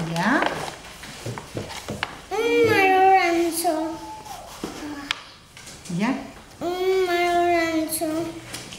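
A young child's high voice singing, holding long, steady notes in two phrases with a pause between.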